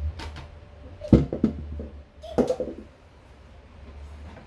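A kitchen knife knocking on a cutting board as a vegetable is cut: a few light clicks, then a sharp knock about a second in with several quicker ones after it, and another sharp knock about two and a half seconds in.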